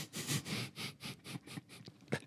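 Quiet, breathy laughter: a quick run of air puffs through the nose and mouth, about six a second, with little voice in it.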